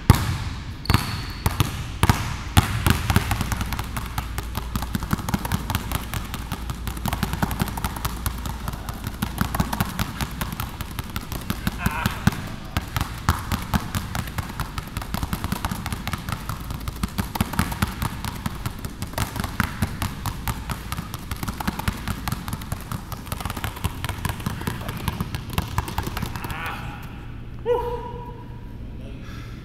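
Two basketballs dribbled fast and low on a hardwood gym floor, one in each hand, in a dense, rhythmic run of bounces. A few louder single bounces come in the first couple of seconds.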